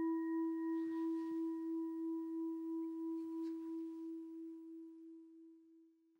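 A struck singing bowl ringing out at the opening of a meditation: one low tone with fainter higher overtones, wavering slowly in loudness as it fades away and dies out about five and a half seconds in.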